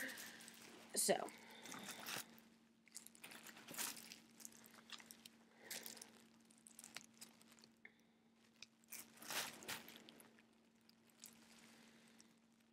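Faint, scattered rustles and crackles of gloved hands working hair dye into hair, over a low steady hum.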